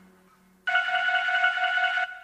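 After a moment of near silence, a single steady electronic tone starts abruptly and holds for over a second before fading.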